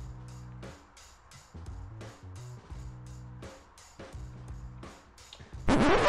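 Background music with held chords and a steady beat. Near the end a loud, short burst of sound rises sharply in pitch.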